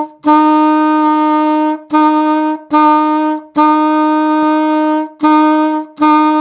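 Alto saxophone playing a rhythm on one repeated note, a written C, each note tongued and separated by a short gap. About six notes of mixed length, long and short, all at the same pitch.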